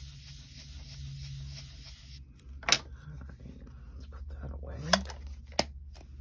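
Craft tools being handled on a worktable: a faint hiss that stops suddenly about two seconds in, then a few sharp taps and clicks, the loudest a little before the middle.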